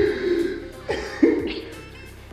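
A man trying to hold back laughter, letting out three sudden cough-like bursts in the first second and a half, over background music.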